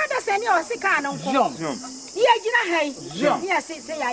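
Several people's voices talking and calling out, overlapping, over a steady high hiss of forest insects.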